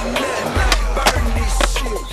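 Hip hop music with a heavy bass beat, over a skateboard's wheels rolling on smooth concrete, with a couple of sharp clacks.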